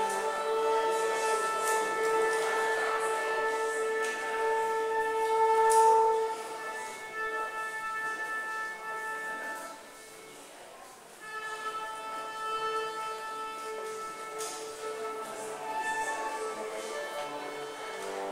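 A small acoustic ensemble with violin playing long held notes. The music swells, then thins out briefly about ten seconds in before the held notes resume.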